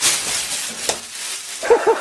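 Loud crinkling rustle of a thin plastic bag as two cats wrestle in it. Near the end a quick run of short yelping calls, about five a second, sets in.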